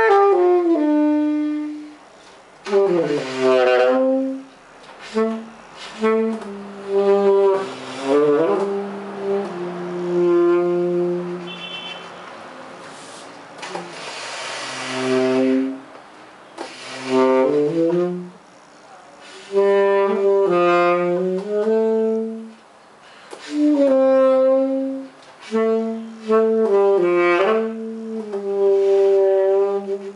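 Tenor saxophone playing a slow melody of held notes, phrase by phrase with short breaks between them.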